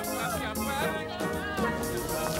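Background Caribbean-style carnival band music, with voices over it.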